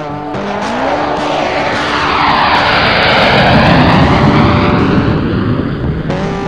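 Jet aircraft noise building to a loud pass about three to four seconds in, with a whooshing sweep as it goes by, then easing.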